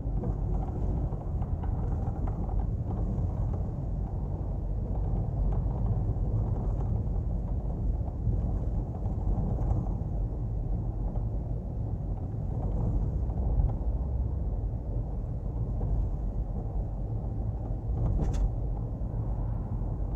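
Steady road and engine noise of a car driving along, heard from inside the car, with a single brief click about eighteen seconds in.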